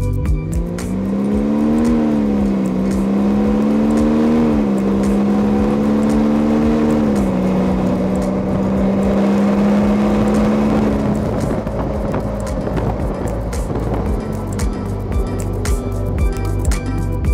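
Nissan Patrol's swapped-in BMW M57 twin-turbo straight-six diesel accelerating through a 76 mm exhaust with no catalytic converter. Its note climbs and drops back at gear changes about four and a half and seven seconds in, holds steady, then fades after about eleven seconds. Background music with a beat plays underneath.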